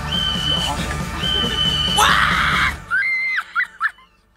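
A song playing with high-pitched screaming over it. The music cuts off just under three seconds in, followed by a few short shrieks.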